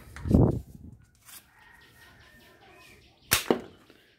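Plastic toy pump-action gun being handled: a short loud rush of sound near the start, then two sharp clicks in quick succession about a second before the end.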